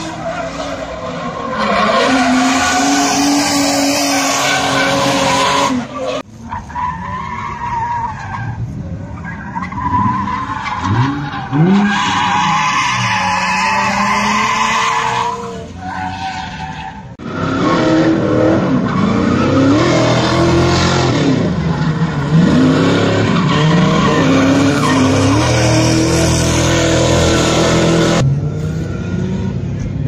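Drift cars sliding through a corner one after another, engines revving up and down over long stretches of tyre screech. The sound comes in three runs, with short lulls about six and sixteen seconds in.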